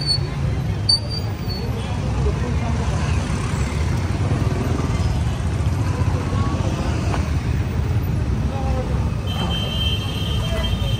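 Busy street ambience: traffic running steadily under the chatter of a crowd, with a constant low rumble.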